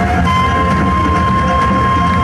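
Korean fusion gugak band music: a single long note on the daegeum (large bamboo transverse flute), held steady in pitch without vibrato, comes in about a quarter second in over a steady drum-and-bass accompaniment.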